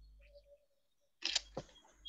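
Near silence, then about a second in a short rustling burst followed by a few faint clicks.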